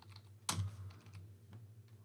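Computer keyboard keystrokes while editing code: one sharper key press about half a second in, followed by a few fainter taps.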